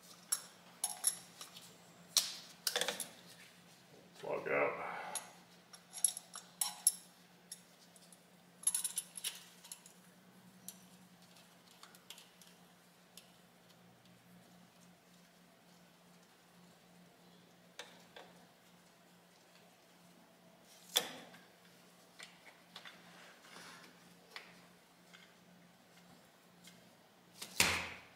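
Metal clinks and clicks of hand tools and small fuel-line fittings being handled and fitted: a banjo bolt with steel sealing washers. They come in a busy cluster over the first several seconds, then sparser, with a couple of sharper knocks later, over a faint steady low hum.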